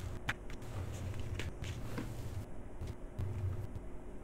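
Quiet room tone: a steady low hum with a few faint short clicks and rustles.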